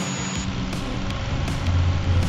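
Underground drilling rig's rock drill boring into a rock face, giving a loud, dense, steady machine noise, with background music beneath it.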